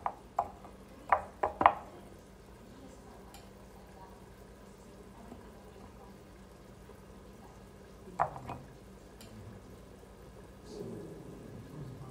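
Light clinks of a small stem shot glass against small dishes as it is dipped and set down: a few sharp clicks in the first two seconds, one more about eight seconds in, and quiet handling in between.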